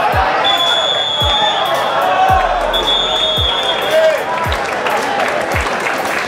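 Football stadium crowd chanting over a bass drum beaten about once a second. A whistle is held twice in the first few seconds, once for over a second and once more briefly.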